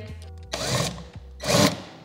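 Cordless drill driving a self-drilling screw through a wall rail in two short bursts. The screw goes in but does not tighten, because it is too short to reach the stud.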